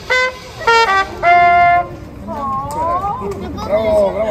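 Street trumpet playing a short phrase: a few brief notes, then a longer, higher held note that ends about two seconds in. Voices talking follow.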